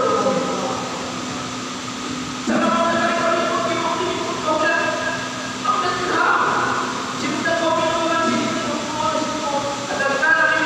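A man's voice amplified through a microphone in a reverberant hall, easing off briefly about a second in and then resuming, over a steady low hum.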